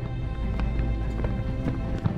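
Low, droning film-score music, with a few sharp boot footfalls on a hard floor at uneven spacing.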